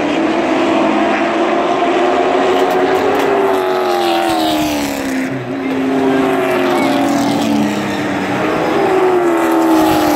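Several full-bodied stock race cars' engines running laps on a short oval, the engine notes rising and falling in pitch as the cars accelerate and lift through the turns. Near the end two cars pass close by and the sound grows louder.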